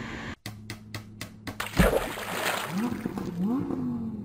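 Outro sound effect with music: a quick run of clicks, then a loud splash about two seconds in, followed by a steady underwater rush with a couple of slow rising tones.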